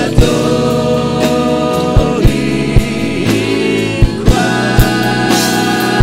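Live gospel worship music: singers over keyboard, bass guitar and drums, with sharp drum hits every half second to a second.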